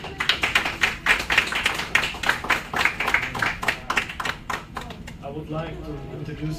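Small audience clapping, a spatter of individual hand claps that dies away about five seconds in as voices take over.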